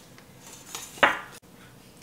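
Wire whisk stirring egg and milk in a stainless steel mixing bowl, with a sharp clink of the whisk against the bowl about a second in.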